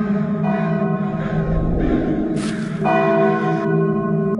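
Church bell tolling: a stroke about half a second in and another near three seconds, each ringing on with its overtones, over a steady low eerie drone. A short harsh burst sounds between the two strokes.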